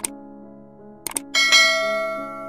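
Subscribe-button animation sound effects: a mouse click at the start, a quick double click about a second in, then a bright bell ding that rings on and slowly fades, over soft steady background music.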